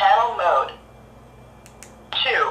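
A Baofeng handheld radio switched on and keyed up: a brief voice-like prompt from its speaker, then faint key clicks.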